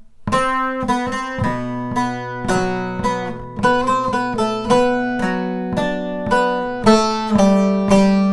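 A bağlama picked with a plectrum, playing a melodic phrase of single plucked notes, about two or three a second, over low strings that keep ringing underneath. The playing starts just after the beginning.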